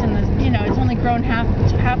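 Steady low rumble of a car's road and engine noise heard inside the cabin, under a woman talking.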